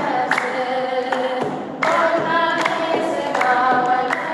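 Ethiopian Orthodox mezmur, a hymn to the Virgin Mary: a woman sings into a microphone with a group of voices, over regular beats on a hide-headed kebero drum. The singing drops away briefly about a second and a half in and starts a new phrase just before the two-second mark.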